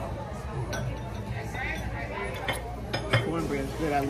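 Cutlery clinking against dishes, several short sharp clinks with the loudest about three seconds in, over background talk.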